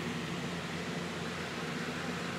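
Steady background hum and hiss of room noise, with faint steady low tones and no distinct events.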